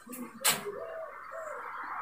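A sharp click about half a second in, followed by a pigeon cooing softly twice, each coo rising and falling.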